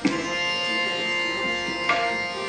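Hindustani classical music: a tanpura drone under a steady held note, with a sharp stroke at the start and another near the end.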